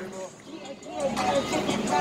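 A short lull, then young men's voices start up again about halfway through.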